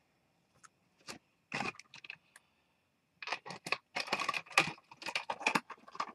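Handling noise of a figurine being moved by hand: a few sharp clicks at first, then a dense run of clicks and light rattling over the last three seconds.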